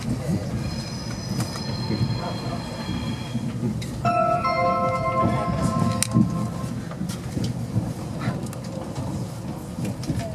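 Class 390 Pendolino electric train running through a cutting, heard from inside the carriage as a steady low rumble of wheels on rail. Twice, about a second in and again about four seconds in, come high held squeals, typical of wheels squealing through curves, each lasting two to three seconds.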